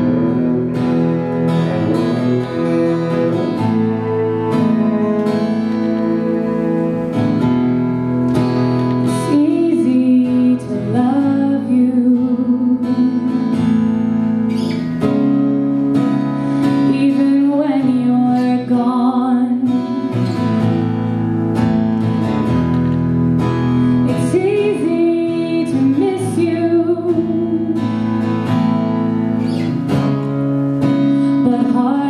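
Acoustic guitar and cello playing a slow instrumental introduction, the cello holding long bowed notes under the guitar.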